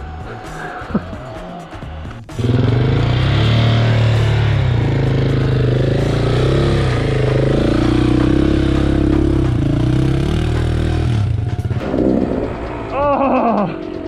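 Motorcycle engine running steadily and loudly, starting abruptly about two seconds in and cutting off suddenly near the end.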